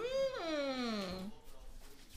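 A young child's voice: one long wordless cry that rises briefly, then slides down in pitch for about a second before stopping.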